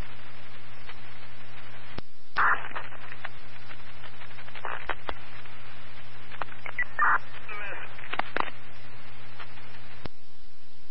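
Fire department radio channel heard through a scanner feed between transmissions: steady static hiss over a low hum, broken by sharp radio clicks as transmissions key and unkey, and a few short garbled fragments.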